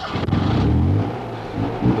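Car engine revving up, its pitch rising, then settling into a steady run.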